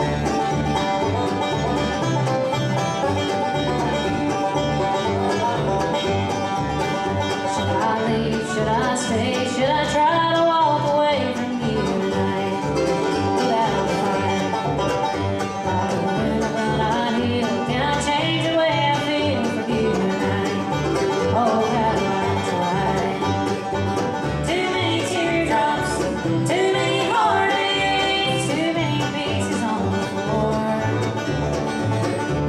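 Live bluegrass band playing: banjo, mandolin, two acoustic guitars and upright bass, with the bass keeping a steady beat under the melody.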